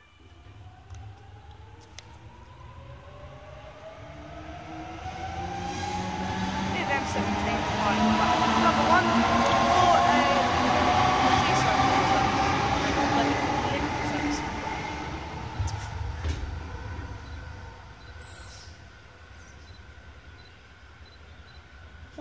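Double-deck electric suburban train passing on the adjacent track. It builds to a peak about ten seconds in and then fades, with a motor whine rising in pitch over rail rumble.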